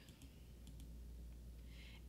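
A few faint computer clicks, spaced through the first second, as the presentation is moved to the next slide, over a low steady hum in near silence.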